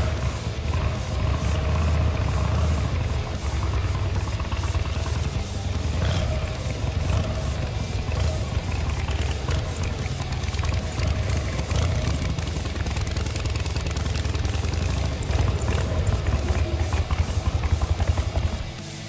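1954 Harley-Davidson Panhead's V-twin engine running, a steady low-pitched beat of firing pulses that holds for the whole stretch. The engine has been fully rebuilt and runs smoothly.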